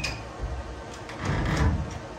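A sharp click, then a soft thump about half a second in, then a louder scraping rustle around one and a half seconds in. These are off-camera handling noises, heard over the steady whir of the pet-drying cage's small fans.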